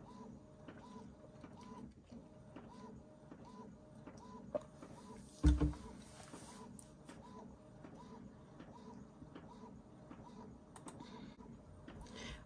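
Epson EcoTank ET-2720 inkjet printer printing, its print-head carriage passing back and forth with a short motor whir about twice a second. A single thump comes about five and a half seconds in.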